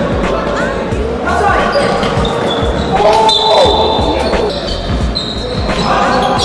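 Basketball game on a hardwood court in a large, echoing sports hall: a ball bouncing repeatedly, with short high squeaks of sneakers on the floor.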